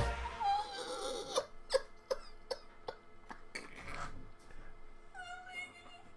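A man's breathless, near-silent laughter: a held high-pitched squeal, then a run of short gasping catches of breath, then whimpering squeals near the end.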